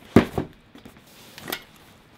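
Knocks from a foam drone case and a shoulder bag being handled and set down on a table: a heavy thump just after the start, a second knock right after it, and a lighter, sharper knock about a second and a half in.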